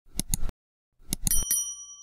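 Sound effects for an animated subscribe button: quick clicks, another burst of clicks about a second in, then a small bell rings out and fades.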